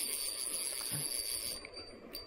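Steady high insect chirring, with a hissing rush over it that cuts off about a second and a half in.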